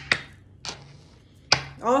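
A deck of tarot cards being shuffled by hand, giving three sharp card snaps at uneven intervals.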